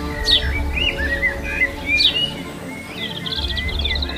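Birds calling over background music: a sharp whistle sweeping downward repeats about every second and a half, with short chirps between, and a quick trill comes near the end.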